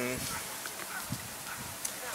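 A man's short hummed 'mm' fading out at the start, then a pause in the talk with faint open-air background, and a soft low thump about a second in.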